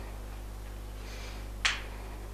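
A steady low hum with a single short, sharp click about one and a half seconds in.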